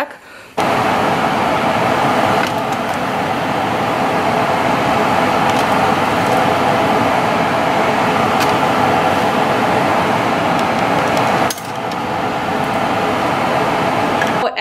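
A large pot of water at a rolling boil, bubbling steadily, with baby bottles and pacifiers being sterilized in it.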